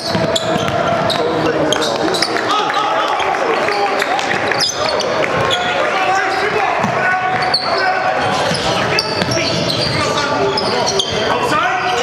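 A basketball being dribbled and bouncing on a hardwood court, with many short knocks and clicks from the play. Players' and spectators' voices mix in throughout, echoing in a large gym.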